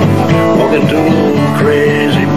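Steel-string acoustic guitar strummed in a country-blues song, with a man's voice singing over it.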